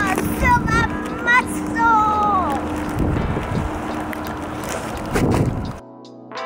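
A young child's high-pitched, wordless vocalizing: a few sliding calls in the first couple of seconds, over wind on the microphone. Near the end the sound cuts off abruptly and guitar music begins.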